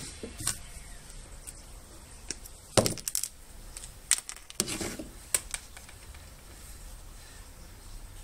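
Scattered light clicks and taps of a short length of copper wire and a marker being handled on a wooden workbench beside a wooden model hull, with a louder little clatter about three seconds in.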